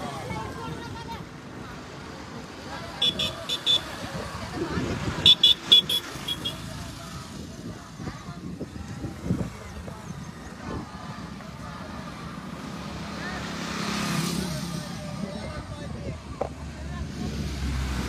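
Roadside outdoor sound of a group on foot, with scattered voices. About 3 s and again about 5 s in come quick clusters of short, sharp high-pitched beeps, and near the middle a vehicle swells up and passes.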